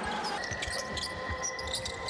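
Basketball bouncing on a hardwood court during live play, with scattered short knocks. A steady high tone sets in about half a second in and holds.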